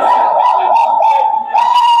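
Public-address feedback from the church sound system: a loud, steady high-pitched howl that holds at one pitch, dipping briefly about one and a half seconds in.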